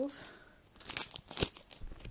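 Foil wrapper of a Pokémon booster pack crinkling as it is opened by hand, with a few sharp crackles, the loudest about one and a half seconds in.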